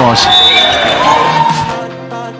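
End of an indoor volleyball rally: a sharp smack about a quarter second in, then a steady whistle blast for nearly a second, the point being called, with players' shouts and music behind.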